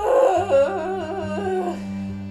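A loud, long wavering howl-like cry that rises in pitch at the start, then wobbles up and down for under two seconds before stopping, over soft background guitar music.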